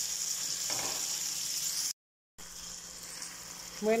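Chopped tomato, bell pepper, onion and garlic sizzling as they fry in oil in a pan. The sound cuts out for a moment about halfway, then the sizzling goes on more quietly.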